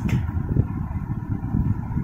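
Low, uneven background rumble with no distinct events.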